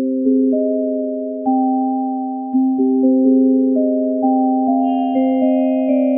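UDO Super 6 synthesizer playing a changing sequence of plain sine-wave chords over a steady drone tone. The drone is LFO-1 running in high-frequency mode, fast enough to be heard as its own pitch, and it stays on one note whichever keys are played. Near the end, fainter high tones join in.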